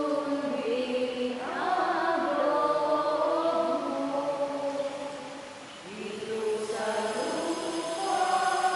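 Group of voices singing a slow, chant-like sung prayer together, with a short lull about five seconds in before the next phrase begins.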